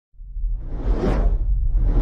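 Intro whoosh sound effect: a rushing swell that rises from silence, peaks about a second in and fades, over a steady deep rumble, with a second whoosh beginning at the very end.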